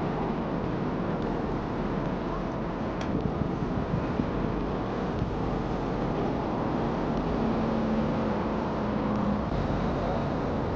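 Steady city street noise: road traffic rumble mixed with wind buffeting the microphone, with a faint low hum for about two seconds in the second half.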